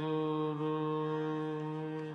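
Sikh kirtan singer holding one long, steady sung note in Raag Basant, slowly fading away.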